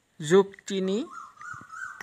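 Mostly a voice speaking in two short phrases, with a faint, thin, high whine that rises slightly over the last second.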